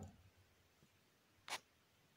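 Near silence: faint room tone, with a single short click about one and a half seconds in.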